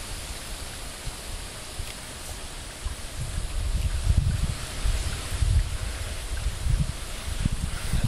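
Wind buffeting the microphone: a steady hiss with low rumbling gusts that grow stronger about three seconds in.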